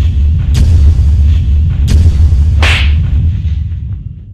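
Cinematic intro sound effects: a loud, sustained deep boom with sharp impact hits about half a second and two seconds in, then a whoosh near three seconds in, fading out at the end.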